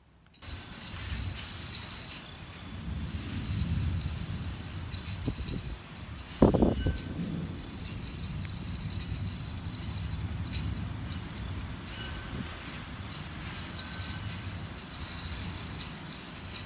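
Outdoor ambience at night: a steady low rumble with a faint thin high tone above it. One sudden loud thump comes about six and a half seconds in.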